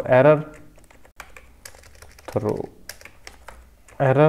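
Keystrokes on a computer keyboard: a few separate key clicks spread out as a short word of code is typed.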